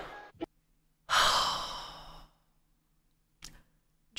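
A woman's long sigh into a close microphone, starting about a second in and fading out over about a second, with a small click just before it.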